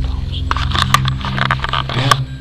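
Indistinct voices with scraping clicks, over a steady low hum.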